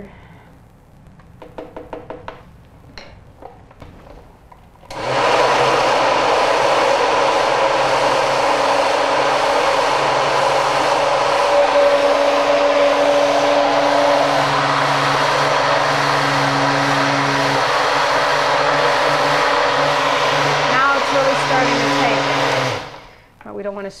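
Countertop blender running steadily for about eighteen seconds on a full jar of thick banana and sunflower-seed batter, its motor working under the load, then switching off. A few soft handling clicks come before it starts.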